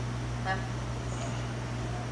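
Steady low hum of room machinery. About half a second in there is one short vocal sound.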